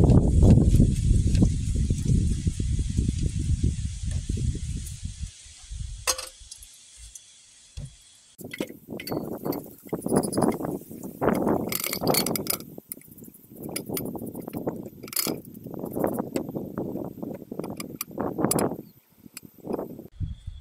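Wind buffeting the microphone, dying away after about five seconds. Then gold granules slide and clink in glassware, in irregular bursts with sharp glass clinks, as they are poured into a glass beaker.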